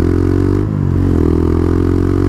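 Quad (ATV) engine running steadily at road speed, with a brief dip in its note a little over half a second in before it settles again.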